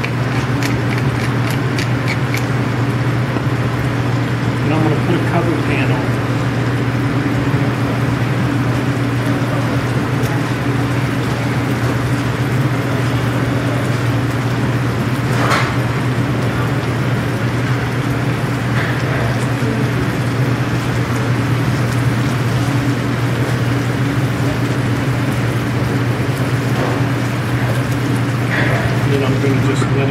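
Sliced potatoes and onions frying in butter in a pan on a portable gas burner, over a steady low hum. A few quick clicks from a wooden pepper mill grinding over the pan near the start.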